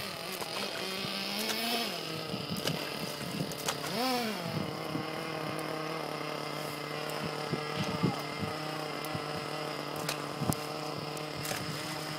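A small motor running steadily with a humming tone, its pitch rising and falling briefly about two seconds in and again about four seconds in. A few sharp clicks come through in the second half.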